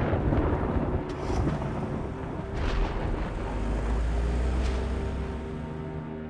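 Background film score of held notes over a deep, steady rumble.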